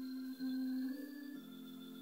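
Soft background music of sustained organ-like keyboard chords, with the held notes changing twice.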